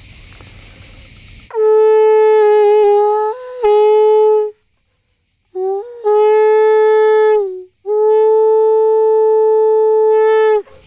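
Conch shell blown as a horn: three long blasts on one steady low note, the first starting about a second and a half in, with a brief lift in pitch near its end and a short silence after it, and the last running on past the end.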